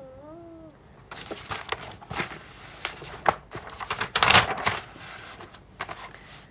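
A short rising-and-falling hum at the start, then about five seconds of rustling and light knocks from things being handled and moved about on a desk, loudest around four seconds in.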